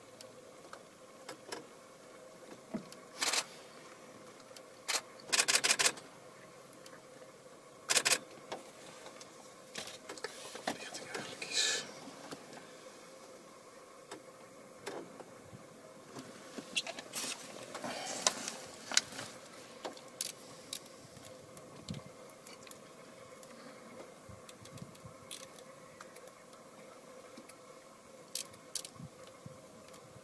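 Bursts of rapid camera-shutter clicks: a short burst about 3 seconds in, a longer run about 5 to 6 seconds in and another at 8 seconds, over a faint steady hum. Quieter scattered clicks and rustling sounds follow.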